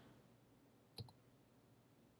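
A single short click of a computer mouse button about a second in, advancing the slide, against near silence.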